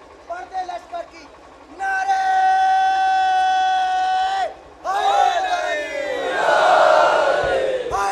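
A man's long, steady held shout of a slogan, answered about three seconds later by a crowd of men shouting back together in unison, their voices falling in pitch: a call-and-response religious slogan.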